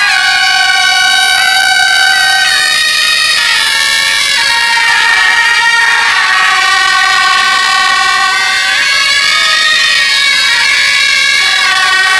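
A small band of wind instruments playing a slow melody together, loud, with long held notes that step up and down.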